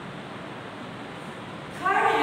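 Steady background hiss; near the end a loud, drawn-out voice starts up suddenly.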